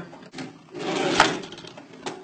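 Two balls rolling down identical curved demonstration tracks: a rolling rumble that swells about half a second in, with a sharp knock just after the one-second mark as the balls reach the bottom.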